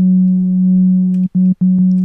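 Native Instruments Massive software synth patch, an oscillator through the Lowpass 2 filter, sounding one low note that is held for over a second and then retriggered twice at the same pitch. Very warm and fuzzy, with the top end filtered away.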